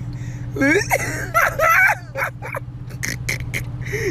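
A person laughing, with high squealing laughs in the first half and short breathy gasps after, over a steady low hum of an idling car heard from inside the cabin.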